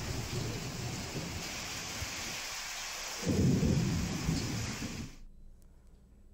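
Heavy rain falling steadily in gusty storm wind. A deep rumble swells about three seconds in and dies away, then all the sound cuts off abruptly near the end.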